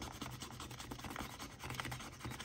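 A pen tip scratching the coating off a scratch-off circle on a paper savings-challenge card: a soft, quick run of light scraping strokes.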